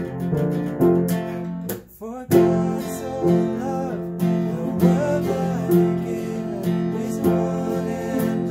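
Acoustic guitar strummed in a steady rhythm behind male voices singing a worship song. The playing breaks off for a moment about two seconds in, then the singing comes back in over the strumming.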